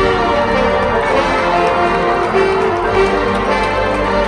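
Marching band playing a sustained passage of held chords. Ringing, bell-like mallet percussion from the front ensemble stands out.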